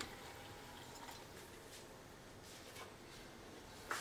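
Near silence: faint room tone with a few soft, faint ticks.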